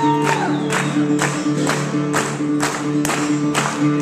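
Live acoustic country-blues: an acoustic guitar plays over held low notes, with a sharp percussive beat about twice a second, in an instrumental break between sung verses.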